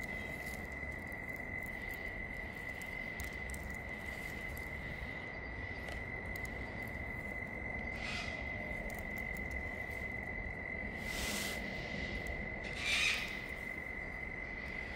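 A cricket-like insect trilling on one steady high note, over faint outdoor background hiss. There are three brief rustles, the loudest about a second before the end.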